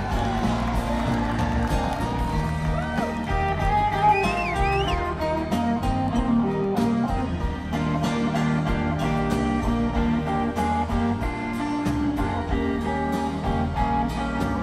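Live band playing an instrumental passage with no singing, guitars to the fore over bass and drums, with a few sliding high notes about four seconds in.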